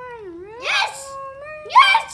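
A child's high, drawn-out wordless voice in a silly play-acting tone: one long held note that dips and slides back up, broken by two breathy squeals, the second and loudest near the end.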